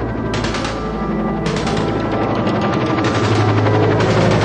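Rapid machine-gun fire in bursts, laid over dramatic music with a low sustained drone. A first short burst comes just after the start, then the firing runs on almost without pause from about a second and a half in, as the overall level slowly rises.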